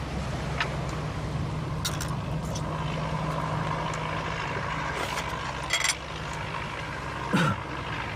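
A steady low mechanical hum, with a few short sharp clicks of dishes and shellfish being handled as two people eat, and a brief low sound near the end.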